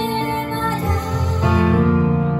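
Slow live ballad: a woman singing with piano accompaniment, the piano moving to a new low chord about a second in.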